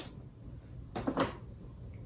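A twist-up travel-size perfume atomizer being sprayed: a short, sharp spray right at the start, then a softer hiss about a second in.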